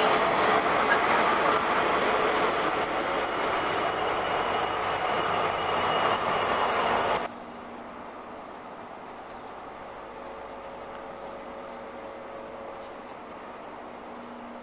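Class 43 High Speed Trains passing through at speed, a loud steady rail noise. It cuts off abruptly about seven seconds in, leaving a much quieter steady diesel engine hum with a low tone.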